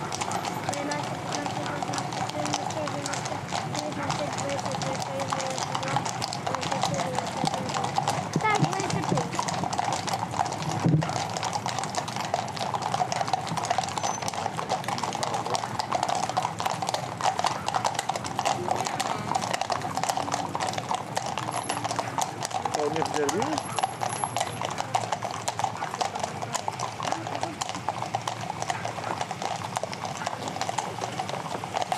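Hooves of a column of cavalry horses clip-clopping on an asphalt street at a walk: a continuous, irregular clatter of many hooves.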